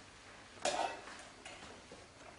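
A large flip-chart paper sheet being handled and turned over: one short papery crackle about two-thirds of a second in, then a few faint ticks.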